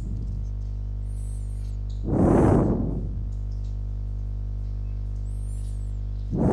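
Steady low electrical hum, with a rush of noise about two seconds in that fades after about a second, and faint high chirps about a second in and near the end.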